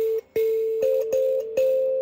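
Mbira dzavadzimu, its metal keys plucked by the thumbs: four plucks, a lower note ringing on under a higher note that sounds against it, each pluck with a bright buzzy attack. It is a simple repeated note pattern played over the third chord of the song cycle.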